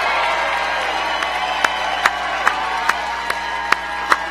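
Large rally crowd cheering and applauding. From about a second in, sharp single claps close to the microphone stand out, evenly spaced at about two and a half a second.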